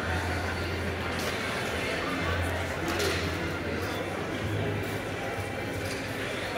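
Exhibition-hall ambience: indistinct voices of people talking nearby, over a steady low hum.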